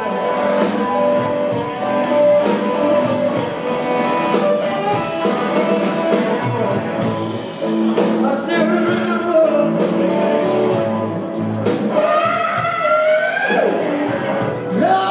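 Live blues band playing: a lead electric guitar bending notes over drums, bass and keyboard.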